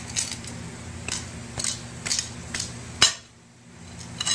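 Flat steel pry bar worked by hand under a wooden carpet tack strip nailed into a concrete floor: a series of sharp metallic clicks and scrapes as the bar bites and the strip pries loose, the loudest click near the end. It is done without a hammer.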